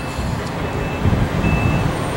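Low rumble of a motor vehicle, with two short faint high beeps about a second and a half apart.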